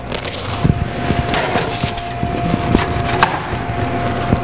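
Fish sizzling and crackling under a hot oven broiler, with quick irregular pops over a steady hiss. A thin steady tone is held underneath.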